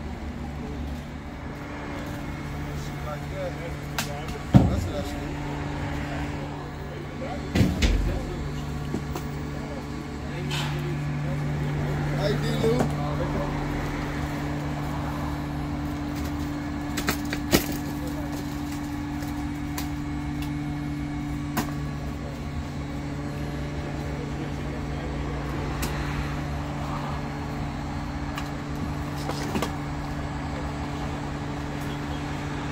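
A vehicle engine idling with a steady low hum, broken by a few sharp knocks and clatters.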